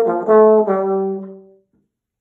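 Bass trombone with independent F and G-flat valves playing the end of a jazz bebop line in B-flat major: a few quick notes, then a held last note that fades out about one and a half seconds in.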